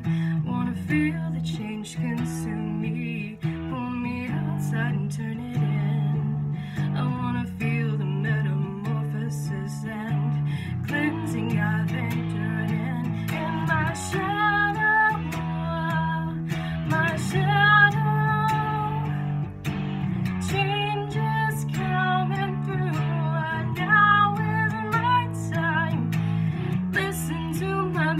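Guitar with a capo playing a repeating chord riff, with held low notes that change every second or two. A wavering wordless vocal line comes in over it in the second half.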